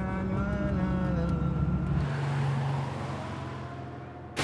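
Car engine running under way with a steady, slightly wavering hum. About halfway through its pitch drops and it slowly fades as the car moves off.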